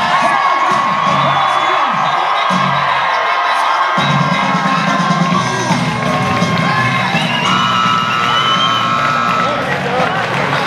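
Arena crowd cheering and whooping over loud PA music with a steady beat.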